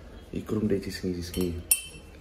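A single sharp, ringing clink of a hard object being handled, near the end, after a few muttered words.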